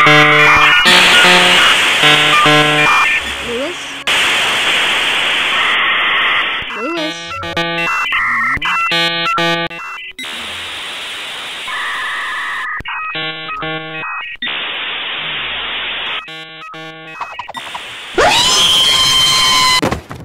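A loud, chaotic collage of edited-in electronic sounds: blocks of hiss alternating with rapid beeping, chirping tone patterns and steady whistling tones, then a loud sweeping, wavering noise near the end.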